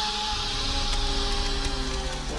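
A loud, steady hiss of gas or vapour jetting from a vent, over steady held notes of background music.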